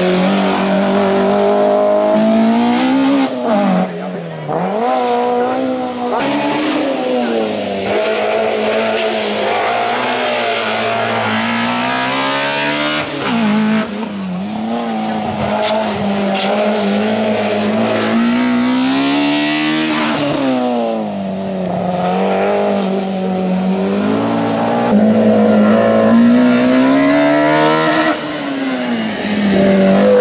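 Fiat Seicento hillclimb race car's engine revving hard, its pitch climbing through each gear and dropping sharply at every shift or lift for a corner, over and over across several passes.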